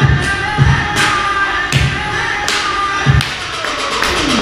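Dance music with a heavy bass beat, sharp percussion hits and a sustained melody.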